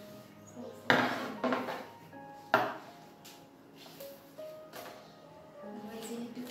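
Soft background music with sustained notes. Three sharp clatters of hard objects knock on the cutting table about one, one and a half and two and a half seconds in.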